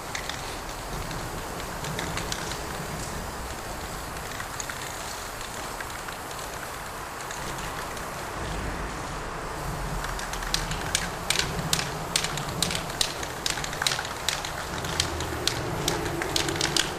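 Aerosol spray-paint can hissing steadily as paint goes on the wall. In the last few seconds a run of short, sharp clicks comes a few times a second.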